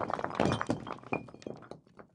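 Sound effect of a brick wall cracking and crumbling: a rapid run of thuds and cracks that thins out and fades away near the end.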